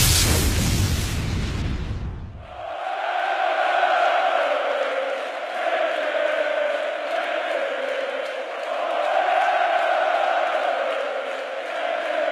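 A loud thunder-crack effect fades out over the first two and a half seconds, then a large arena crowd chants, its voices swelling and falling back every two to three seconds.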